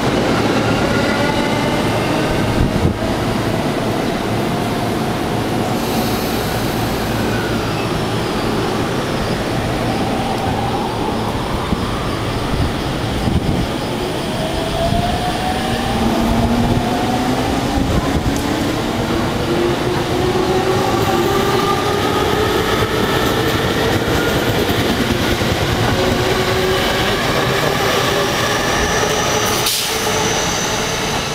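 Yamanote Line electric commuter trains running on the rails in a steady rumble. Several motor whines rise in pitch as trains gather speed; the longest climbs steadily through the second half.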